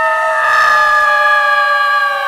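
Horror sound effect of the ghost fillies' roar: one loud, high-pitched, shrieking cry that glides quickly up at the start and then holds a single pitch.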